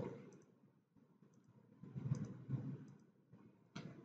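A few faint clicks about halfway through, a computer mouse being clicked, over otherwise near-quiet room tone.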